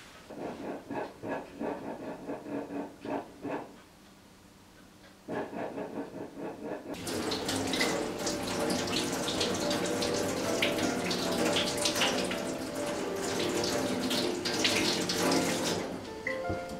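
Tap water running over apples into a stainless steel sink as they are rinsed by hand, starting about seven seconds in. Before that comes a run of soft rhythmic pulses, two or three a second, broken by a short pause.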